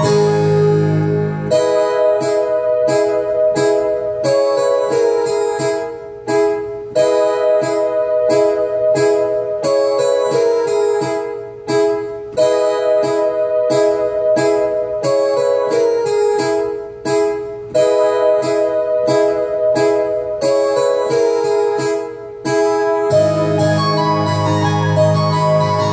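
Electronic keyboard set to a layered harpsichord and piano-string voice, playing a steady pattern of repeated chords in E major, about two a second, with a falling melodic line that recurs every few seconds. Low bass notes sound at the start and again near the end.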